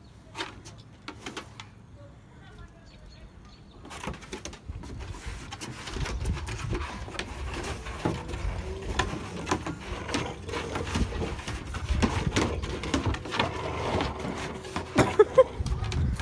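Pit bull puppy playing tug-of-war with a rope toy on a wooden deck: scuffling, tugging and knocking, mixed with low vocal sounds from the puppy. Quiet at first, it gets louder about four seconds in.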